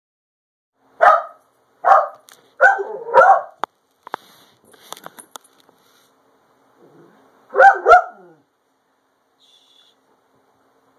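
A dog barking in play over a ball: four sharp barks in the first few seconds, then a quick double bark near the end. Faint clicks and scuffles in between.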